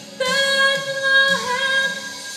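A woman singing one long held note of a Christmas song; the note begins just after the start, dips in pitch about one and a half seconds in, and breaks off briefly near the end before the next phrase.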